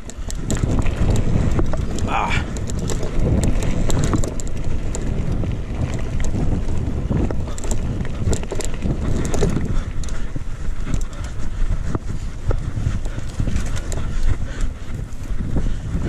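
A mountain bike rolling fast over a dirt and gravel trail. Wind buffets the handlebar-mounted microphone, the tyres run over the ground, and frequent small rattles and knocks come from the bike over the bumps.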